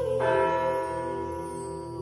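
A bell struck once, just after the start, ringing and slowly fading over a held musical drone in the song's instrumental ending.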